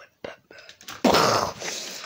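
A child's loud, breathy sigh: a hissing exhale that starts about a second in and fades over the next second, after a few faint clicks.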